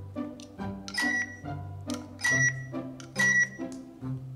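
Three short, high electronic beeps about a second apart from a capsule-toy miniature transit IC card reader as a tiny card is tapped on it, over background music.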